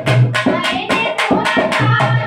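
Women singing a Hindi devotional bhajan to a hand-played dholak and hand-clapping, the drum and claps keeping a quick, even beat of about four to five strokes a second.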